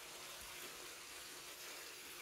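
Faint, steady hiss-like background noise with no distinct events.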